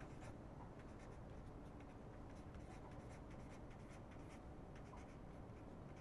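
Faint scratching of a pen writing on paper, a run of short strokes.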